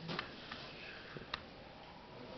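Quiet room with two light, short clicks, about a fifth of a second in and again past a second in, as playing cards are handled on the table.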